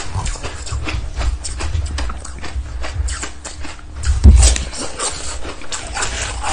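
Ice being bitten and crunched close to the microphone: a dense run of crisp cracks with low chewing thumps, the loudest crunch about four seconds in.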